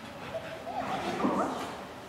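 Dog barking and yipping excitedly in a short flurry, loudest just past a second in.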